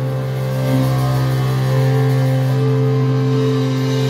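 Electric guitar and bass amplifiers holding one sustained, distorted low chord as a steady drone, with no drums, recorded lo-fi.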